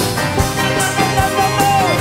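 Live acoustic band playing an instrumental vamp: acoustic guitar strumming, with bass guitar, accordion and regular drum strikes, and one note held through most of it.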